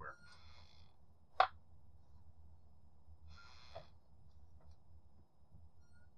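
A low steady hum with one sharp click about a second and a half in, the loudest sound, and two short soft hisses, one at the start and one at about three and a half seconds.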